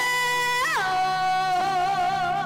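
Woman singing one long held note in Colombian llanera music, the pitch lifting and dropping back briefly in the middle, then held with vibrato, over the band.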